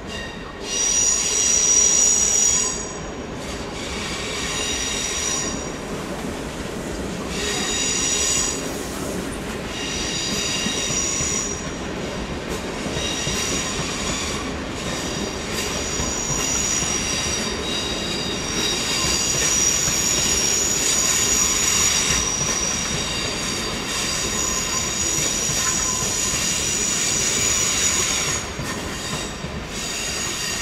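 Steel wheels of a slowly moving double-deck passenger train squealing on curved track and points, a high whistling screech that comes and goes in repeated waves over the low rumble of the rolling train. The squeal is loudest about two seconds in.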